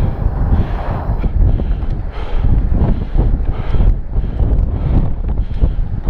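Wind buffeting the camera's microphone: a loud, uneven rumble that swells and dips in gusts.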